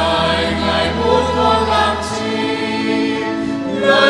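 Church choir singing a Vietnamese hymn, holding sustained chords; the chord changes about halfway through.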